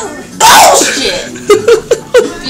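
A sudden loud vocal outburst from a woman, about half a second long, followed near the end by short choppy bursts of laughter.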